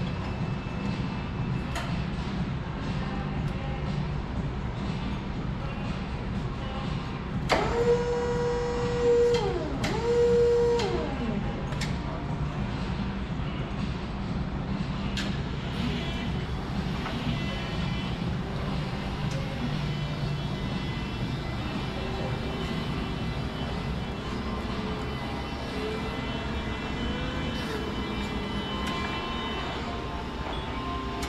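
Bendi B30 48-volt electric forklift's motor whining. Twice, about eight and ten seconds in, it rises quickly to a steady pitch, holds for a second or two, then winds back down, over a steady low hum.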